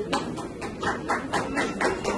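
Hand clapping in a steady rhythm, about four claps a second.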